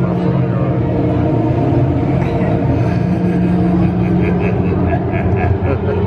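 Steady low drone of a spooky background soundtrack, with crowd voices mixed in.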